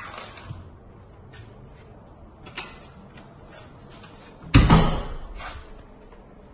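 A few light knocks and clicks, then one loud, deep thump about four and a half seconds in, followed by a smaller knock, as of a wooden door or something solid being bumped.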